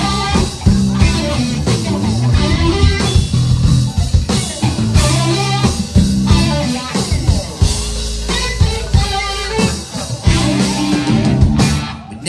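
Live rock band playing a song's instrumental opening: electric guitar over bass guitar and drum kit, with no vocals yet.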